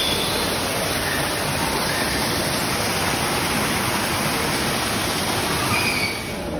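Water pouring and splashing over rocks in a small waterfall into a pool, a loud, steady rush.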